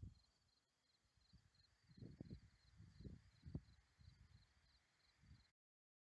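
Near silence: crickets chirping faintly with an evenly pulsed high trill, a few times a second, with some scattered low rumbles on the microphone. Everything cuts off to dead silence near the end.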